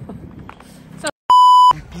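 A censor bleep: one short, steady, high beep lasting under half a second, about a second and a half in, cutting over a swear word.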